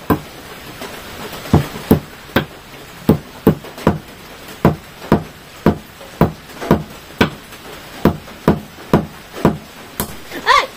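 A hand-held metal tool knocking against a round stone slab. The strikes are sharp and separate, about two a second, coming in short runs with brief pauses between them.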